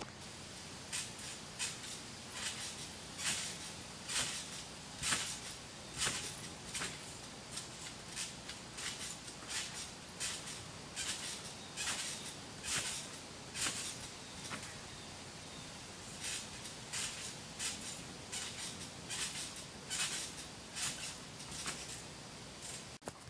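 Trampoline being bounced on at a distance: a brief creak and rustle of mat and springs with each bounce, irregular, roughly one to two a second.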